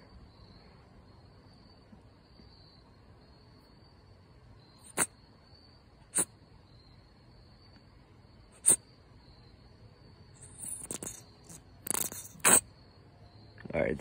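Plastic hand sanitizer bottle being handled and squeezed: three sharp clicks spaced a second or two apart, then, from about ten seconds in, a couple of seconds of rough squeezing and squirting as gel is forced out, the loudest of it near the end. A faint steady high-pitched tone sits underneath.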